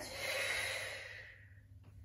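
A woman's long audible exhale, a breathy rush of air lasting about a second and a half and fading out. It is a paced Pilates out-breath taken during the movement.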